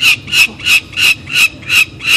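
Peregrine falcon calling: one short, sharp call repeated evenly about three times a second, loud throughout.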